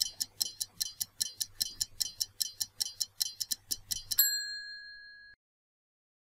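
Stopwatch ticking sound effect, fast even ticks at about five a second, counting down a quiz timer. About four seconds in it ends with a single louder ding that rings for about a second and then cuts off, marking time up.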